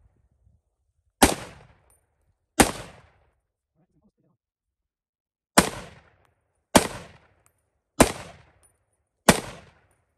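Six single rifle shots from a .308 AR-10 style semi-automatic rifle, each followed by a short echo. The shots come about one to one and a half seconds apart, with a pause of about three seconds after the second. The rifle cycles each round without a stoppage through the last round in the magazine.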